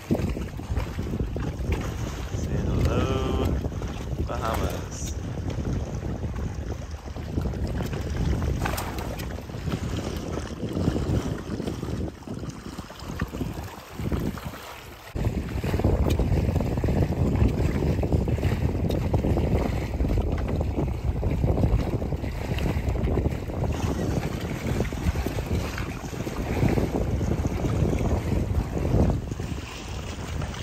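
Wind buffeting the microphone over water rushing and slapping along the hulls of a Hobie 16 catamaran under sail in choppy water. The gusty rush dips briefly about halfway through, then comes back louder.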